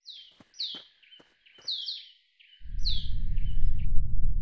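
Birds chirping: a string of short calls, each falling quickly in pitch, over about three seconds, with a few light clicks in the first second and a half. A louder low rumbling noise takes over about two and a half seconds in.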